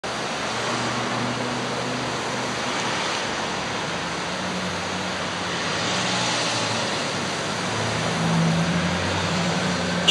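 Steady street traffic noise, the hum of passing vehicles swelling slightly near the end.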